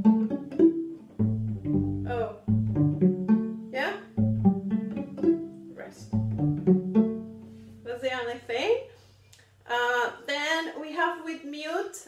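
Double bass played pizzicato: a phrase of low plucked notes, each with a sharp attack and a short decay. The last note rings on and fades about eight seconds in.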